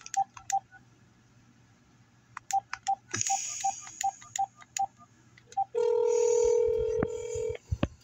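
Phone keypad beeps as a number is dialled: three quick presses, then a run of about ten more, each a short beep of the same pitch. About six seconds in, a ringing tone sounds for about two seconds as the call goes through.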